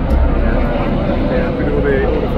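Street background: a steady low rumble, like a passing engine, under people talking, with a faint tone that sinks slightly in pitch near the end.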